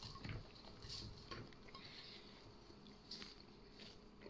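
Faint, scattered soft patters and light knocks of raw cauliflower florets sliding off a plate and dropping into a bowl of chopped cabbage.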